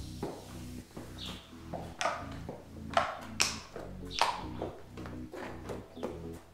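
A horse's hooves clopping on a brick-paved barn aisle at a walk: irregular sharp strikes, loudest from about two to four and a half seconds in as the horse passes close. Soft background music runs underneath.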